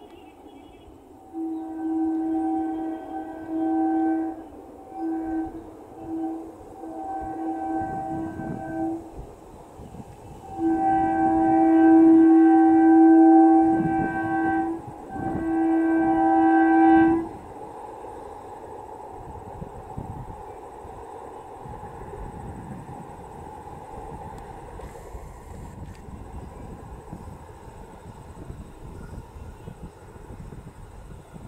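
Electric multiple unit (EMU) local train's horn sounding a string of short blasts and one long blast of about four seconds, followed by the steady rumble of the train running on the track.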